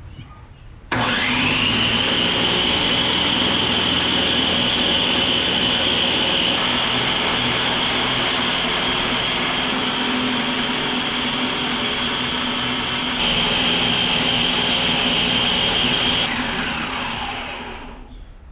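Homemade belt grinder running as a steel knife blank is ground against the abrasive belt. The motor's whine rises as it spins up about a second in, holds steady under the grinding, then glides down as the machine spins down near the end.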